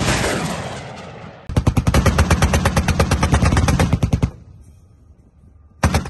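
The fading roar of a rocket launch from a truck-mounted launcher. About a second and a half in, a burst of rapid automatic cannon fire starts at about ten shots a second and lasts nearly three seconds, and near the end a single very loud cannon shot rings out.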